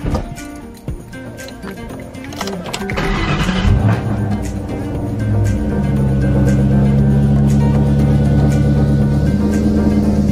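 The supercharged 4.6-litre V8 of a 2003 Mustang SVT Cobra is cranked and catches about three seconds in, then settles into a steady idle. This is its first start after a supercharger oil change, and it runs smooth. Background music plays throughout.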